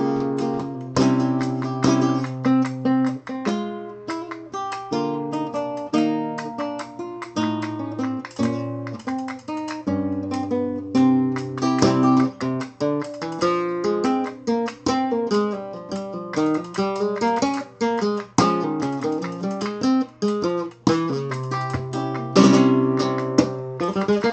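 Flamenco guitar playing a bulería falseta at a slowed-down tempo: a continuous run of plucked single notes and chords.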